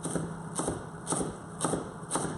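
Chef's knife chopping fresh coriander leaves on an end-grain wooden chopping board: the blade knocks on the wood in a steady rhythm, about two strokes a second.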